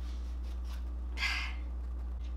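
A small knife scraping into a raw beet once, a short raspy scrape about a second in, over a steady low electrical hum.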